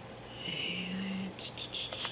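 A woman's voice murmuring under her breath: a short steady hum on one note, then a few soft whispered sounds near the end.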